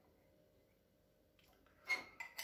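Quiet room tone, then near the end one short, sharp clink with a brief ring: copper pipe knocking against the steel wire rack it rests on as hands take hold of it.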